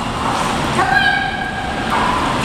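Steady rushing of pool water around a swimming dog. A high, steady whine holds for about a second in the middle.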